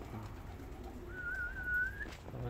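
Domestic pigeons cooing faintly. About a second in, a single high whistle starts, wavers slightly and holds for about a second: a pigeon keeper whistling to call his flying birds home.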